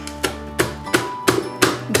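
Plastic Fullstar vegetable chopper's hinged lid slapped down by hand about five times, roughly three sharp chops a second, forcing onion through the dicing grid. Background acoustic guitar music runs underneath.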